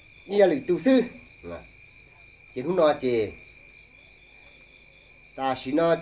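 Crickets calling in a steady, unbroken high-pitched trill that carries through the pauses in a man's talk.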